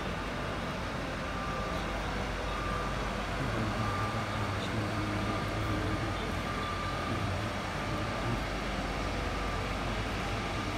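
Steady ambient rumble and hiss, with a low hum that grows a little stronger from about three and a half seconds in and a faint thin tone that comes and goes.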